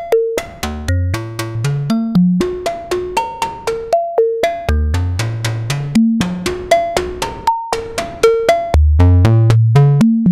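Harvestman Piston Honda Mk II wavetable oscillator played as a percussive synth sequence through a Make Noise Optomix low-pass gate: short plucked pitched notes, about four to five a second, their tone shifting as the wavetable sliders are moved. Low bass notes climb upward in steps about a second in, around five seconds in and again near the end.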